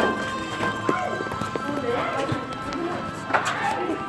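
Footsteps going down stairs, a scatter of irregular taps, over steady ambient background music and a murmur of distant voices.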